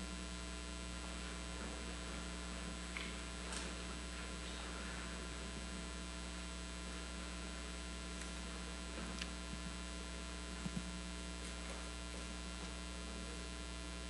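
Steady electrical mains hum with many overtones, with a few faint, soft knocks about three seconds in and again near eleven seconds.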